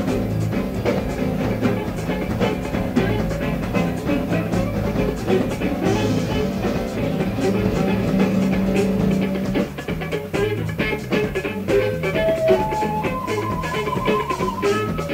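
Progressive rock band playing live with drums, bass, guitar and keyboards, the drums keeping a busy beat. Near the end a melody climbs upward in steps of held notes.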